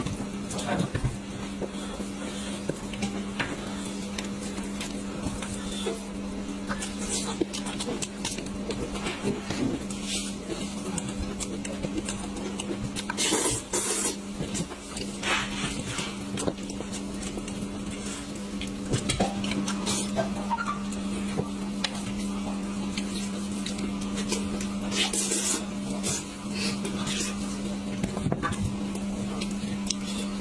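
Gloved hands pulling apart and picking at a sauce-soaked sheep's head on a plate: sticky, wet handling noises, crinkling plastic gloves and scattered clicks and taps on the plate, with eating sounds. A steady low hum runs underneath.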